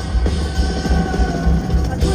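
Live rock band playing: drums and bass in a steady low pulse under held notes, recorded from the audience.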